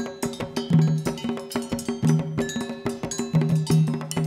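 Brazilian percussion ensemble music: a fast, dense rhythm of drum strikes with pitched low drum tones and bright metallic accents.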